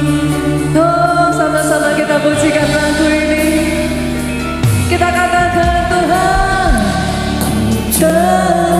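A woman singing a worship song into a microphone over steady instrumental accompaniment, holding two long phrases with wavering sustained notes.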